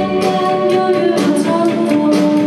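Live band music: a singer holds long notes over guitar, and the bass drops away a moment in.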